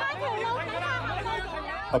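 Excited voices of a street crowd talking and calling out over one another, with a low steady hum underneath.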